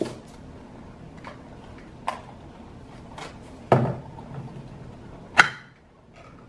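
A cardboard cookie box being handled and opened at a table: three short sharp clicks and knocks, about two, three and a half and five and a half seconds in, the last the loudest.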